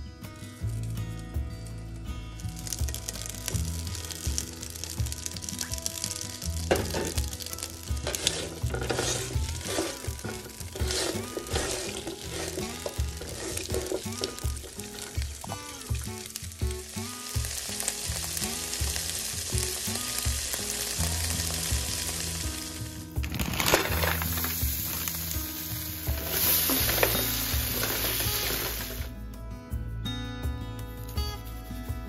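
Asparagus spears sizzling in oil in a nonstick frying pan, a steady hiss with scattered clicks and taps, growing louder about three-quarters of the way through. Background music plays underneath.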